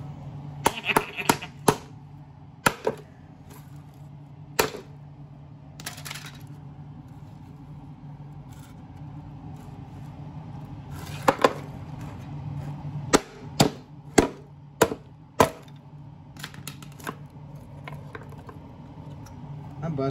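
Particleboard speaker cabinet cracking and snapping as its top panel is torn open by hand: sharp cracks in clusters, a quick run in the first two seconds and another between about 11 and 15 seconds, over a steady low hum.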